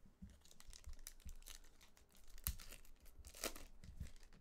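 A Panini Select trading-card pack's foil wrapper being torn open and crinkled by hand: a run of crackles, with louder rips about two and a half and three and a half seconds in.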